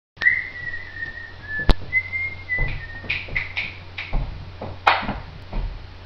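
A person whistling a few long held notes of a tune, the pitch stepping from note to note, with a sharp click about a second and a half in. Knocks and thumps follow in the second half, the loudest about five seconds in.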